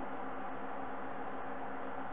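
Steady hum with an even hiss, like a small fan or motor running, unchanging throughout.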